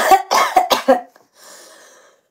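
A woman coughing, a quick run of several sharp coughs in the first second, into her fist, then a faint breath.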